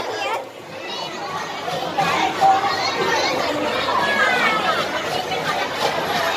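Children talking and chattering over one another, several voices at once.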